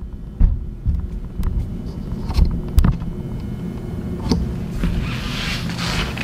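Handling noise from a hand-held camera being moved and reframed: a low rumble with irregular knocks and bumps, and a brief rubbing hiss near the end.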